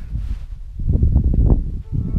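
Uneven low rumble of handling and wind noise on a handheld camera's microphone as the camera is swung round, with a few light knocks about a second in.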